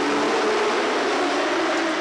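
Several dirt-track modified race cars' engines running together at racing speed, a steady drone whose pitch shifts slightly.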